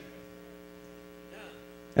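Steady electrical mains hum in the audio system, a low buzz made of several steady tones held evenly through the pause.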